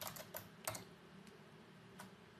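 A few faint keystrokes on a computer keyboard, about four quick taps in the first second, then quiet.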